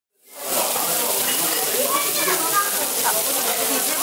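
Strips of meat sizzling on a hot griddle plate, a steady spitting hiss of frying fat that fades in over the first half second, with people talking in the background.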